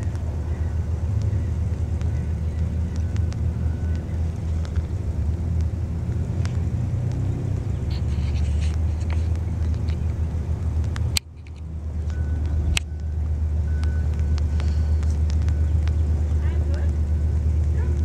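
Car engine running on a dirt rallycross course: a steady low rumble that cuts out briefly about eleven seconds in, then grows slowly louder.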